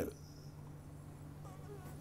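Steady low hum with a faint buzz in it: quiet room tone.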